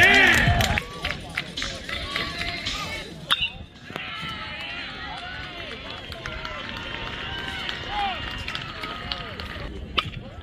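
Overlapping shouts and chatter of players and spectators at a baseball game, loudest at the very start, with a few sharp claps or knocks in the first few seconds.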